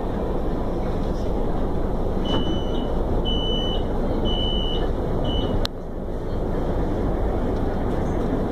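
Door-closing warning beeps of a CSR electric train: four short high beeps about a second apart, the last one shorter, then a sharp knock as the doors shut. A steady low rumble fills the car throughout.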